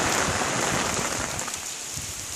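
Steady rain falling, drops pattering on an open umbrella close overhead, easing a little in the second half.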